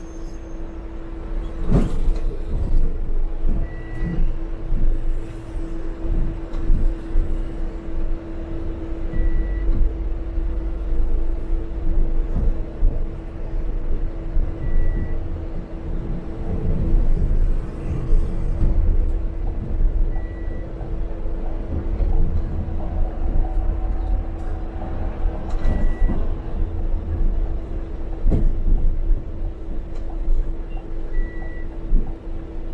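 Inside a Transmilenio articulated bus while it is moving: a steady engine and road rumble with a constant hum over it. A short high beep repeats about every five and a half seconds, and there is a sharp knock about two seconds in.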